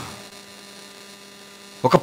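Low, steady electrical mains hum from a microphone and sound-reinforcement system, heard in a pause between a man's spoken phrases. His voice returns just before the end.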